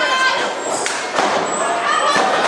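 A few dull thuds on a wrestling ring's canvas-covered boards as wrestlers grapple on the mat, the heaviest a little past halfway, with people's voices calling out throughout.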